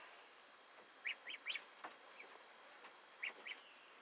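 Faint peeping of ducklings in a brooder: a few short, high peeps about a second in and again just past three seconds.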